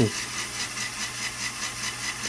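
Lego Technic electric motor driving a plastic gear train and lift arms, running steadily with a quick, even ticking of about five a second.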